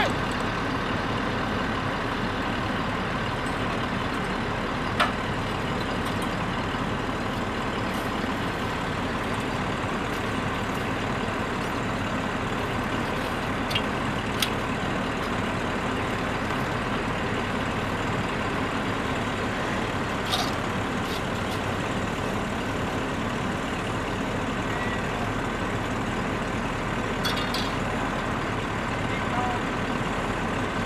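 Utility bucket truck's engine running steadily, with a few light knocks over it.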